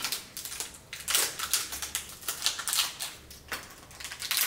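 Crinkly plastic lollipop wrapper and sticker packet crackling in the hands as they are unwrapped, in irregular bursts of sharp crackles.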